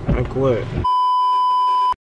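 Censor bleep: a single steady high-pitched pure tone about a second long, laid over a muted stretch of speech and cutting off suddenly near the end.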